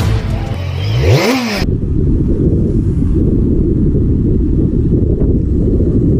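A short whoosh that rises and falls in pitch about a second in, then a steady low rumble of wind on the microphone of a moving scooter, with its engine running underneath.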